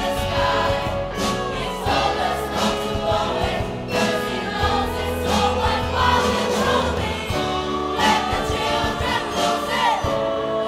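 Choir of girls and young women singing in harmony with a live band: drum kit keeping a steady beat under held bass notes, with guitars.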